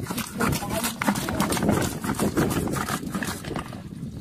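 Bamboo fish trap rattling and knocking irregularly against a metal basin as it is shaken out to empty the catch.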